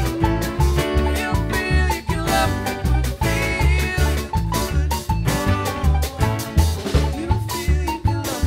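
Live string band playing with acoustic guitar, mandolin, banjo, upright bass and drum kit over a steady, driving beat.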